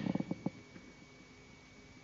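A brief low, creaky throat sound from a man, a hesitant vocal murmur close to a headset microphone, in the first half second; then quiet room tone with a faint steady high-pitched whine.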